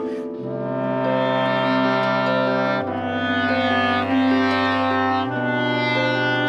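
Clarinet and bass clarinet playing slow classical chamber music together: the bass clarinet holds long low notes that change about every two and a half seconds, while the clarinet sustains a line above.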